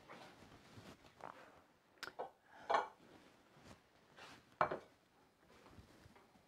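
A spatula knocking and scraping in an Ozeri frying pan as veggie burger patties are turned: a few short, sharp clatters, the first about two seconds in.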